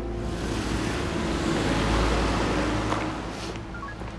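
A car driving past: road and engine noise swelling to a peak about two seconds in, then fading away.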